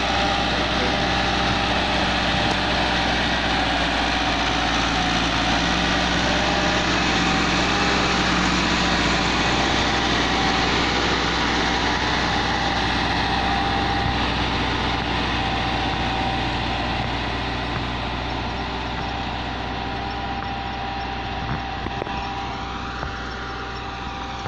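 Massey Ferguson 375 tractor's diesel engine running steadily while it pulls a spring-tine cultivator through the soil. The engine note grows fainter over the last several seconds.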